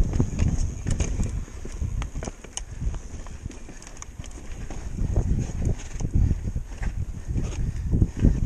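Mountain bike riding over bare sandstone slickrock: an uneven low rumble from the tyres and ride, with scattered sharp clicks and knocks from the bike. It is louder in the first second and again around five to six seconds in.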